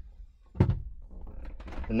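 A single dull thunk about half a second in from a helicopter's cabin door, as the door-limit strap is pulled free of its mount, followed by faint handling noise.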